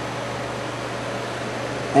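A steady, even hiss with no clicks or tones in it.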